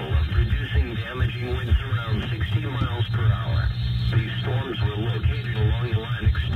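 A voice reading a severe thunderstorm warning over an FM car radio, thin-sounding, over a steady low hum.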